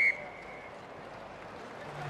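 Referee's whistle blown for half time: a single high, steady note that cuts off just after the start, leaving a faint ringing tail. After it there is the low murmur of the stadium crowd.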